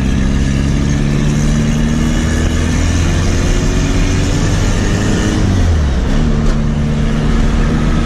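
Turbocharged VW Gol's engine heard from inside the cabin, pulling in gear with its pitch rising slowly. About five and a half seconds in, the pitch drops sharply, then holds steady.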